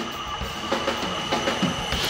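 Drum kit: several quick tom hits, each dropping in pitch, over a steady high metallic ringing.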